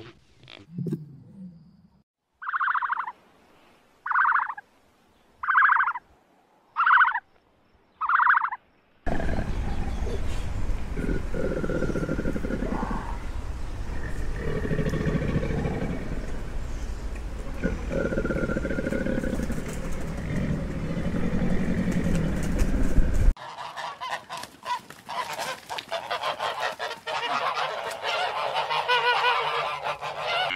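A flock of white domestic geese honking in a rapid, overlapping chorus over the last seven seconds or so. Before it come five short, evenly spaced calls, then a long noisy stretch with a low rumble that cuts off suddenly.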